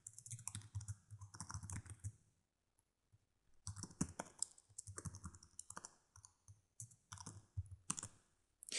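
Faint computer keyboard typing: quick runs of keystrokes, a pause of about a second and a half near the middle, then more typing.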